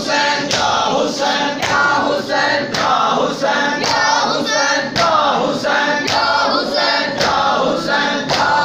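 A group of men chanting a noha together, kept in time by matam: open-palm strikes on the chest about twice a second.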